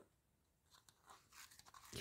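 Near silence, with a few faint crinkles and clicks from about the middle on as a clear plastic compartment box of rolled transfer foils is handled.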